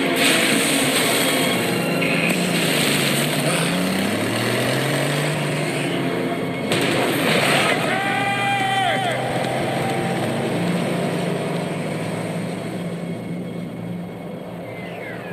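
A car engine sound effect: the engine runs with a noisy hiss, revs up with a rising pitch about four seconds in, and then holds a steady low note.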